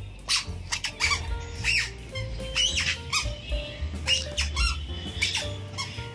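A toddler's squeaky sandals chirping in short high squeaks, roughly one per step, over background music with a low bass line.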